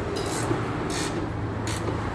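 A hand ratchet wrench clicking in three short raspy runs about 0.7 s apart as the back-strokes turn a lower control arm bolt, the final tightening done with the car at ride height.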